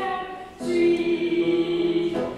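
A small group of women singing together. After a short break about half a second in, they hold one long chord.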